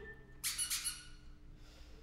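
A squeaky toy sounding two short squeaks in quick succession about half a second in.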